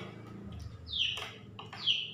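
A bird chirping twice, about a second apart, each call short and falling in pitch.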